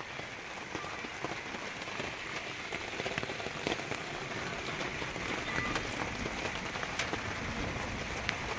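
Steady rain pattering on the tarp overhead, many small drop ticks over an even hiss.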